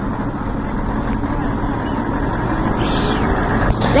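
Coach's diesel engine running steadily, growing a little louder toward the end.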